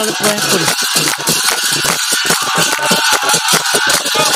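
Brass hand cymbals clashing in a fast, continuous rhythm with a drum and hand-clapping, as Assamese satra devotional music.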